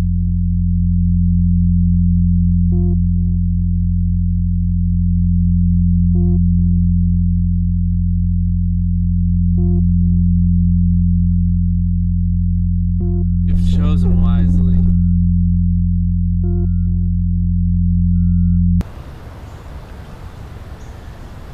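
Loud, steady synthesized low drone with a short cluster of electronic beeps repeating about every three and a half seconds. A brief harsh, noisy burst comes a little past halfway, and near the end the whole sound cuts off abruptly.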